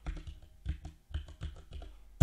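Computer keyboard keystrokes: about half a dozen separate, irregularly spaced key taps as number values are typed in.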